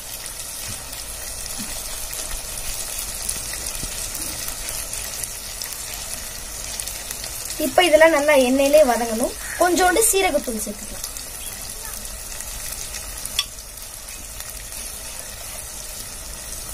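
Oil sizzling steadily in a clay pot as shallots, tomatoes and green chillies fry. A voice speaks briefly about halfway through.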